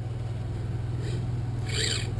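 Bricklaying robot (Construction Robotics' SAM) running with a steady low machine hum, with a brief rasping hiss about a second in and again, louder, near the end.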